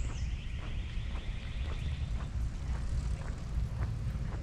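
Footsteps on pavement, a faint knock about every half second, over a steady low rumble of wind on the microphone. A high buzzing trill runs through the first half and stops about two seconds in.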